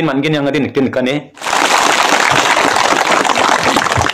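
A man speaking, cut off about a second and a half in by a crowd clapping, which starts suddenly and carries on steadily.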